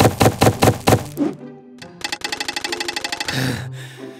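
Cartoon food-prep sound effects over background music: a run of quick thunks about six a second, then after a short pause a much faster rattling run of hits that ends in a brief hissing swell.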